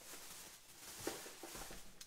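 Faint rummaging and handling noises, with a few soft knocks around the middle, as someone searches among items for a supplement bottle.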